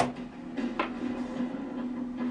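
Two sharp clicks, one at the start and a weaker one just under a second later, over a steady low hum.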